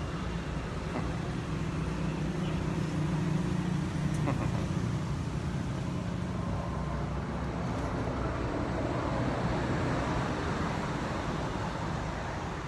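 Steady low rumble of a motor vehicle engine, with a broader rushing noise building in the second half.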